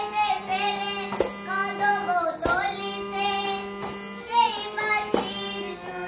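A young girl singing a Krishna bhajan over the held chords of a harmonium, with a sharp percussion stroke on a steady beat about every second and a quarter.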